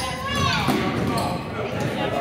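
A basketball bouncing on a hardwood gym floor, with voices carrying across a large gym.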